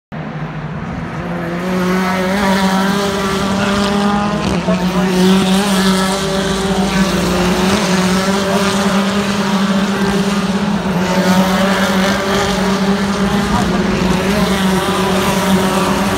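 British Touring Car Championship cars' 2.0-litre turbocharged four-cylinder engines racing past one after another, a continuous layered engine note. It swells about two seconds in and stays loud.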